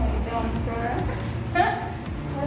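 A woman's voice making short, wordless vocal sounds, the loudest near the end.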